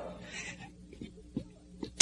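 A pause in a man's preaching: the end of his voice dies away into the hall's reverberation, leaving a faint steady hum and two small clicks near the end.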